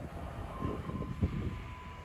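Passenger train passing over a level crossing and running off: low wheel rumble with a few dull thumps and a thin steady whine through the middle, fading near the end.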